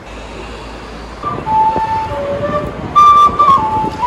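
Street busker playing a melody on a small end-blown wooden flute, single clear notes, some of them held, starting about a second in over a steady hum of city traffic.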